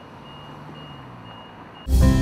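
A works vehicle's reversing alarm sounds high and steady over a low engine hum and street noise. Near the end, a loud music sting cuts in abruptly.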